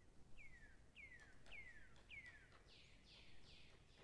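Faint songbird song: a run of about seven short down-slurred whistled notes, roughly one and a half a second, the last few pitched higher and fuller.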